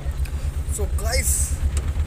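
Engine of a small goods vehicle idling, heard from inside its cab: a steady low rumble with an even pulse.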